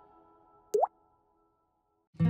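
A short, rising 'bloop' sound effect about three-quarters of a second in, with the last faint tones of a fading musical chime before it.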